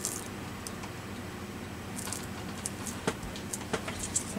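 Light rustling and a scatter of small clicks and taps, mostly in the second half, from hands handling and pressing down a collaged playing card with its paper layers and embellishments.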